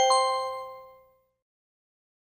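A short chime: a few bell-like notes struck in quick succession, ringing together and fading out within about a second.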